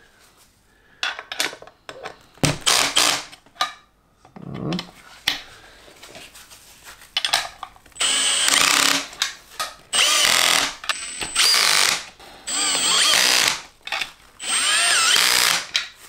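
Cordless drill-driver on a low setting, running the assembly bolts of a three-piece wheel in crosswise. It runs in short bursts at first, then in about five longer runs of a second or so each, with a high whine, from about halfway.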